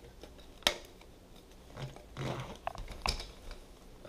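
Light clicks and taps from a Makita backpack vacuum's corrugated plastic hose being handled: one sharp click about two-thirds of a second in, then a few softer taps near the end.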